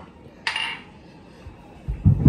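A single sharp clink of kitchen tableware about half a second in, ringing briefly, followed by a couple of faint knocks near the end.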